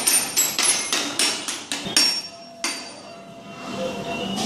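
Toy xylophone's metal bars struck with a mallet in quick, uneven taps, each ringing briefly at a high pitch. About ten strikes come in the first two seconds, then one more about two-thirds of the way through, leaving a short fading ring.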